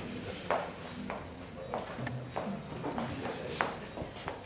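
Footsteps of hard-soled shoes on a hard floor, a steady walking pace of a little under two steps a second, over faint room murmur.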